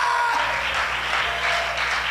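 Church congregation applauding and calling out in response to the preacher, over a steady low hum.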